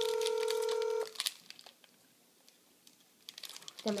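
Telephone ringback tone of an outgoing call over a phone's speaker: one steady ring that cuts off about a second in, then a pause, with a few faint clicks. It is the ringing of a call that has not been answered yet.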